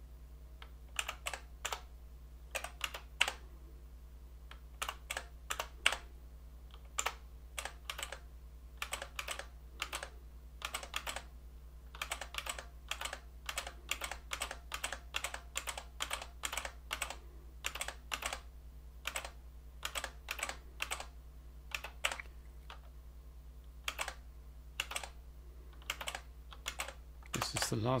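Computer keyboard keys pressed one at a time in separate clicks and quick pairs at an uneven pace, each press stepping a debugger through the code one instruction at a time. A steady low hum runs underneath.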